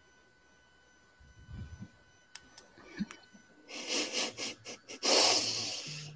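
Near silence with a few faint knocks and clicks, then from about halfway a person's breathy exhaling and quiet laughing close to a microphone, loudest near the end.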